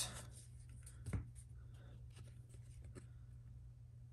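Donruss football trading cards being flipped through by hand: faint scrapes and flicks of card stock sliding over one another, with one brief louder sound about a second in.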